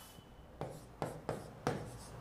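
Marker pen writing on a whiteboard: about five short separate strokes rubbing across the board.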